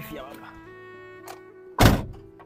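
A car door slamming shut near the end, one short loud thunk over steady background music.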